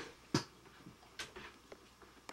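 A few short, sharp clicks: a loud one about a third of a second in, then two fainter ones in the second half.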